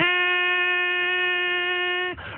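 A beatboxer's voice holding one long note at a steady pitch into a studio microphone.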